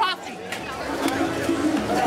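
People talking and chattering, a brief voice at the start and then a general babble of voices, with a steady low tone underneath from about half a second in.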